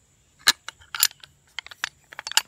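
A metal CMI rigging pulley clicking and clinking as it is turned over in the hand, two sharper clicks about half a second and a second in, then several lighter ones.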